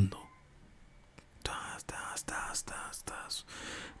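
A man whispering a rhythmic, rasping stroke sound with his mouth, about three strokes a second, in imitation of a small hacksaw cutting slowly through a skull.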